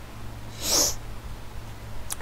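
A single short breathy snort or puff of air, a little under a second in, over a faint steady hum.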